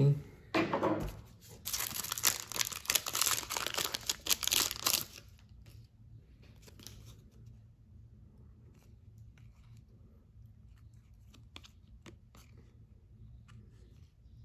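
Foil trading-card pack wrapper torn open, ripping and crinkling for about four seconds. Then quiet, with faint scattered clicks as the cards are flipped through in the hands.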